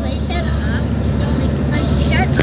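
Steady low rumble of a car driving along, heard from inside the cabin: engine and road noise.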